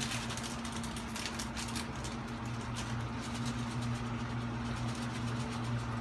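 Small electric exhaust fan running with a steady low hum and a faint even hiss.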